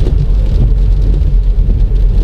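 Steady low rumble of road and engine noise inside the cabin of a 2017 Citroën C4 Grand Picasso HDi diesel cruising at about 60 km/h on a wet road.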